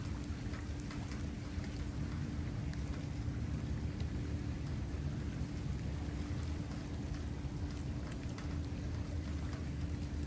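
Steady rain falling, with scattered pattering drops, over a steady low hum.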